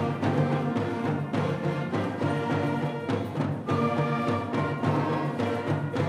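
School concert band playing a piece: wind instruments holding chords over a steady, regularly repeated low-note beat.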